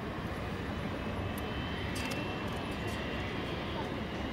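Boeing 747-400 being pushed back by a tug, heard from an airport observation deck: a steady low rumble of airport and engine noise with a faint high whine. There are a couple of faint clicks about one and a half and two seconds in.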